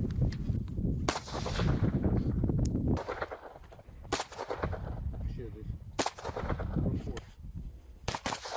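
Kalashnikov-pattern assault rifles fired as single shots: about five sharp reports, irregularly spaced a second or two apart, over a low background rumble.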